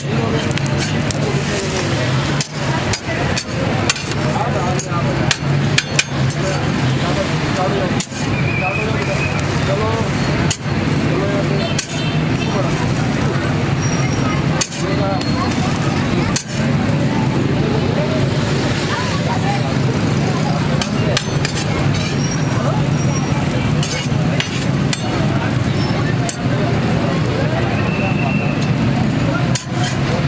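Metal spatula clicking and scraping on a flat steel griddle while an egg fries, sharp clicks every second or two. Underneath runs a steady low hum with background voices.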